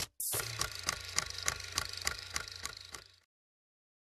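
Electronic end-card jingle: a whoosh, then a beat of about four sharp hits a second over a steady low drone, fading out about three seconds in.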